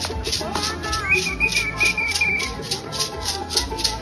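Live African hand-drum ensemble playing with a shaker rattle keeping a steady beat of about four strokes a second.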